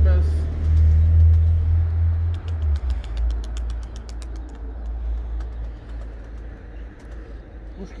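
A steady low rumble, loud for the first three seconds and then dropping to a softer level, with a scatter of faint high ticks through the middle.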